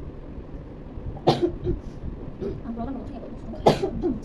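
A person coughing twice, two sharp bursts about two and a half seconds apart.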